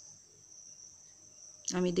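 A faint, steady, high-pitched trill or whine, like insects chirping. A voice starts speaking near the end.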